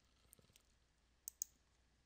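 A computer mouse button clicked: two quick clicks close together a little past halfway, otherwise near silence.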